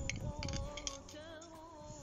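Background music with a wavering melodic line. In the first second, a few sharp clinks of a metal spoon scraping diced bell pepper off a plate into a cast kazan.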